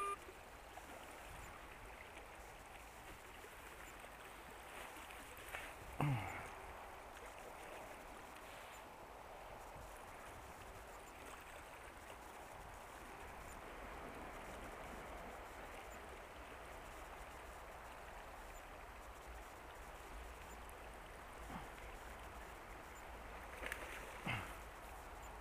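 Steady sound of a river flowing past the bank, with two brief louder sounds, one about six seconds in and one at the very end.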